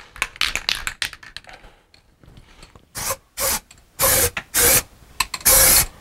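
Aerosol can of white crack-test developer shaken, its mixing ball rattling in quick clicks for about the first second and a half, then sprayed in about five short hissing bursts from about three seconds in, the last one the longest.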